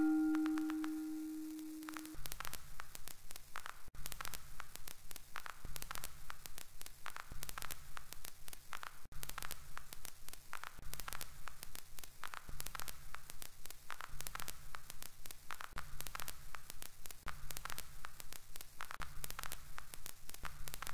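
Electronic noise soundtrack: dense static crackle over a low rumble that pulses on and off just under once a second. A ringing pitched tone fades out about two seconds in.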